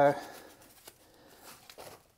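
A drawn-out spoken 'so' ends at the start, followed by a near-quiet pause holding only a few faint clicks and rustles of gloved hands handling electrical cable.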